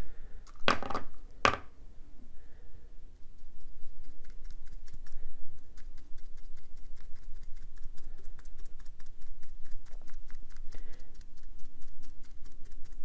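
Foam brush dabbing Mod Podge onto a glitter-coated stainless steel tumbler: two louder taps about a second in, then a long run of quick light taps, several a second, as the glue is pounced over the loose glitter.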